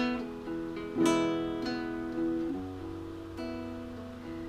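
Acoustic-electric guitar playing strummed chords. A strong strum at the start and another about a second in ring out and fade, followed by softer chord changes in the second half.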